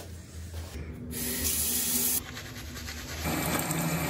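Water from a bathroom sink tap running and splashing, coming in strongly about a second in, as hands are rinsed and splashed at the basin.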